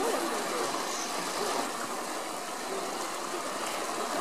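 Steady outdoor background noise, with a faint distant voice near the start.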